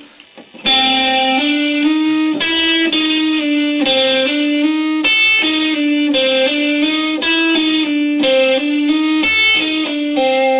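Electric guitar on a clean amp setting with a little overdrive, playing a repeating hybrid-picked lick that mixes pick and fingers. It is a run of single notes stepping up and down the G string, with higher notes on the top strings, and it starts after a short gap about half a second in.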